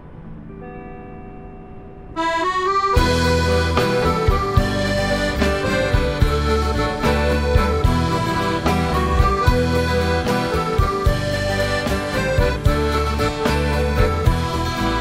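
Instrumental intro of a band song: soft keyboard notes, then about two seconds in a quick rising run of notes leads into the full band, with accordion, guitars and bass over a steady beat.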